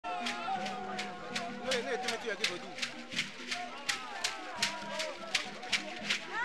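Group singing and voices over a sharp, steady percussion beat of about three strokes a second.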